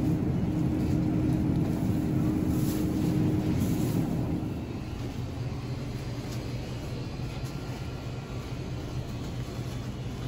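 Steady low rumble and hum of a grocery store's produce aisle, with a steady droning tone that stops about four seconds in, after which it is quieter.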